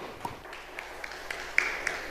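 Audience applauding: a few scattered claps at first, filling in to steady applause about halfway through.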